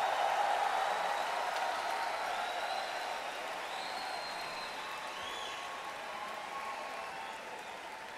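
Concert crowd applauding and cheering just after a song ends, with a few whistles over it; the applause slowly dies down.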